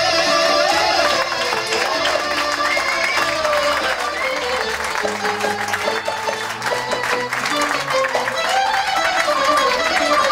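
Live Constantinopolitan-style Greek ensemble playing: clarinet and violin carry a gliding melody over quick plucked strings and upright bass, with a man's voice into a microphone.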